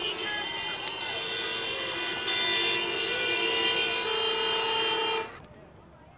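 Many car horns honking at once in jammed traffic: long, overlapping held blasts at several pitches, which cut off a little past five seconds in and fade away.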